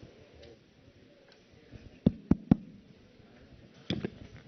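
Three quick knocks on a microphone in a row about two seconds in, and one more near the end, over faint background noise from a large chamber.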